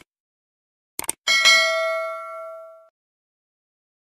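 Subscribe-button sound effect: quick mouse clicks, then a single bell ding about a second in that rings out and fades over about a second and a half.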